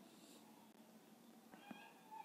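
Near silence, with a faint, brief high-pitched animal call near the end.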